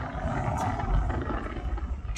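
Low, steady road and engine rumble heard inside a moving car's cabin.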